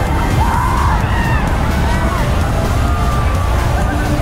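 Wind rumbling steadily on the microphone high up on an open fairground ride. Faint music and distant voices from the fair come through it.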